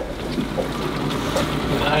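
A fishing boat's outboard motor running steadily at low speed, a constant low hum, with wind noise on the microphone.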